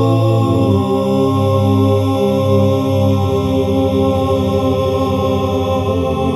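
Unaccompanied singing in four-part close harmony, one man's voice multitracked, holding long sustained chords that change to new chords twice.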